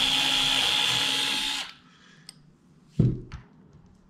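Power drill with a 2.5 mm bit running steadily and drilling through both cortices of a synthetic femur bone model, with a steady whine, then stopping about a second and a half in. A single knock follows near the three-second mark.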